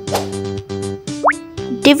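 Children's background music with steady held notes, a pop sound effect near the start, and a short rising tone about a second in.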